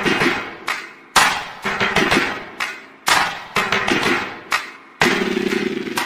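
Loud edited intro soundtrack of sharp percussive impact hits, a heavy hit about every two seconds with lighter ones between, each dying away quickly; a low buzzing drone comes in for the last second.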